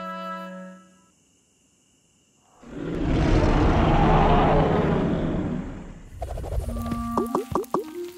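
A giant cartoon tyrannosaur roars: one long, rough roar that swells and then fades over about three seconds. A held music chord dies away before it, and light plucked music starts near the end.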